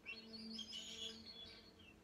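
Bamboo shakuhachi flute sounding a soft low note with a lot of airy breath noise over the tone, fading out near the end.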